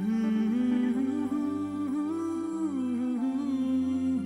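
A male voice humming a slow, smoothly gliding melody without words, over soft sustained backing chords, in a Sinhala film song.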